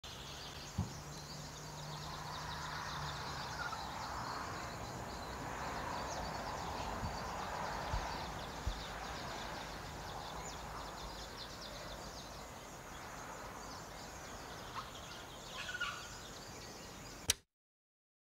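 Forest ambience: a steady, faint outdoor background with faint bird calls and a few light clicks and knocks. It ends in a sharp click and cuts off suddenly near the end.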